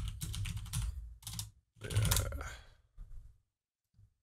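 Typing on a computer keyboard: a quick run of keystrokes, a second short burst about two seconds in and a few more near three seconds, then the typing stops.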